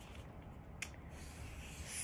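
Faint rubbing of a felt-tip marker on a paper worksheet, with a small click a little under a second in.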